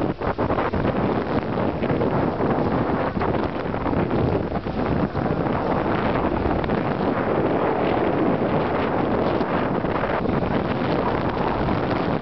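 Steady wind noise buffeting the microphone on the bow of a moving catamaran, with the rush of sea water around the boat beneath it.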